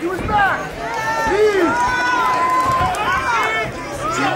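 Spectators and corner crew shouting over one another at an amateur MMA cage fight, with one long drawn-out yell about halfway through.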